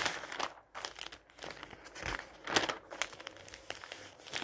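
Glossy magazine pages being turned by hand, each turn a rustling, crinkling swish of paper; the loudest turn comes about two and a half seconds in.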